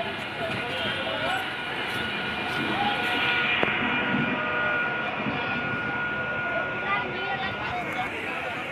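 Eastern Railway EMU local train running along the track, a steady rumble with a thin high whine that sets in about three seconds in. Voices chatter in the background.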